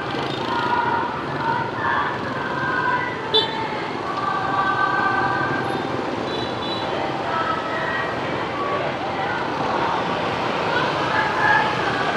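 Motorbike traffic on a busy city street, with people's voices over it, some of them held on long steady notes. A short sharp sound stands out about three seconds in.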